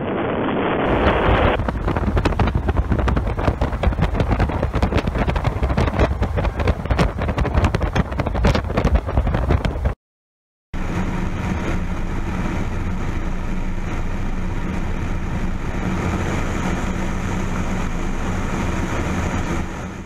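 Light floatplane's propeller engine as it flies low past, with heavy wind buffeting on the microphone. After a brief silent gap halfway, a small plane's engine drones steadily, heard from on board the aircraft.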